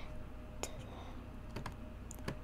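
A few separate keystrokes on a computer keyboard, two of them close together in the second half, as digits in the code are deleted and retyped.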